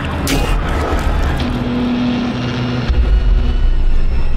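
Horror trailer score and sound design: a low rumbling drone with a held tone over it, a brief whoosh near the start, and the rumble swelling louder about three seconds in.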